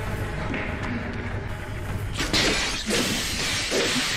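TV drama soundtrack: a steady low music score with a sudden crash about two seconds in and another short hit near the end, typical of action sound effects.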